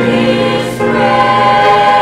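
Small male choir singing a slow gospel hymn in long held notes, with a short break between phrases just before a second in.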